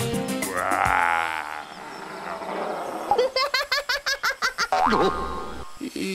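Cartoon sound effects over background music: a springy, wobbling boing near the start, then a quick run of short rising blips about three seconds in.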